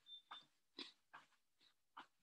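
Faint, short huffing breaths of a person exercising, several a second at an uneven pace, with a brief high beep right at the start.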